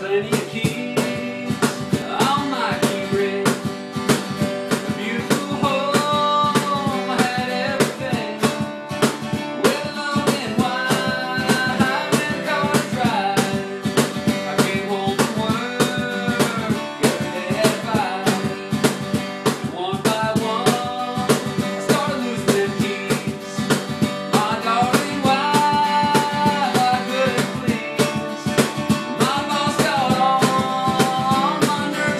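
An acoustic guitar strummed over a steady cajon beat, with a male voice singing the melody in phrases from about two seconds in.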